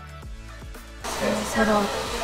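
Electronic background music with a beat, which about a second in gives way to the steady rushing hiss of a hair dryer running, with a woman's brief voice over it.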